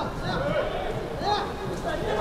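Faint voices of footballers calling out on the pitch over low background noise.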